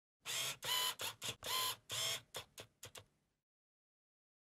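Logo sound effect: a run of about ten camera-shutter-like clicks that come shorter, faster and fainter until they stop about three seconds in.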